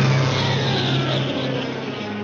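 Cartoon soundtrack: a sudden loud, crash-like rush of noise that slowly fades, with a falling pitch running through it, over low held notes of the orchestral score, as the cat's hand drops away from the nest.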